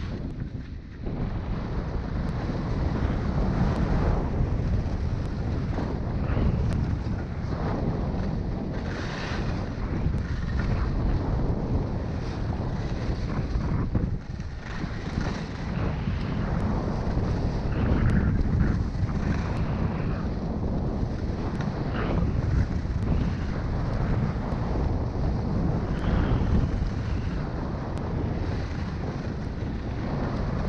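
Wind rushing over the microphone of a skier's camera at speed, with skis hissing and scraping across the snow in a swish every second or two through the turns.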